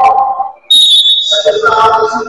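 Referee's whistle, one short blast of about half a second with a steady high pitch, starting suddenly under a man's talking.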